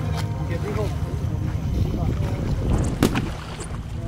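Water sloshing and paddle strokes around stand-up paddleboards on open water, with a low rumble of wind on the microphone. A single sharp knock comes about three seconds in.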